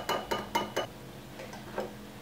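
Wire whisk clinking against the inside of a small ceramic bowl while whisking a thin oil and soy-sauce dressing: a quick run of clinks in the first second, then fainter, with a last clink near the end.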